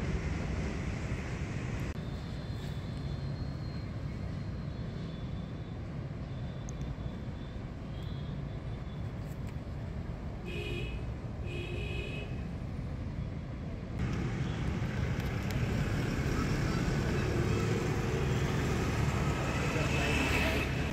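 Outdoor roadside background noise: a steady low rumble, with two brief high tones a little after the middle and a step up in loudness about two-thirds of the way through.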